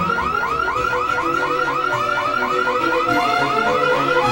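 Car alarm sounding: a fast, even run of warbling chirps, about five a second. It is set off as the sedan's door is opened.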